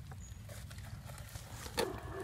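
Metal spade digging in wet clay soil: faint scrapes and clicks of the blade in the dirt, then a sharper crunch of the blade biting in near the end, over a steady low rumble.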